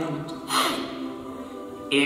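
A small a cappella group of voices holds a chord, and one voice slides steeply down in pitch about half a second in.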